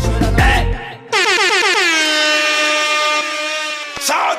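The song's beat stops about a second in, and an air horn sound effect comes in suddenly, its pitch dropping at first and then held for about three seconds.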